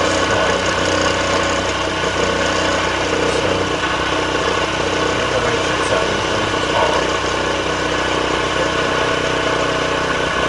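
CNC mill spindle running steadily while an end mill cuts into the copper heat spreader of an Intel Core 2 Duo processor, a continuous machining hum with the cutter grinding through metal.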